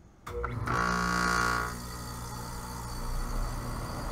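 Package air-conditioning unit starting up: a sudden start about a quarter second in, then a steady machine hum, with a higher whine on top that fades after about a second and a half.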